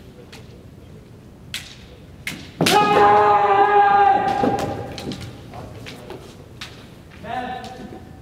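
Bamboo shinai clacking against each other a few times, then a long, loud kiai shout from a kendoka about two and a half seconds in, with the men (head) strike that scores the point. A second, shorter shout follows near the end.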